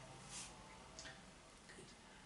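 Near silence: room tone, with a faint rustle and a soft click about a second in.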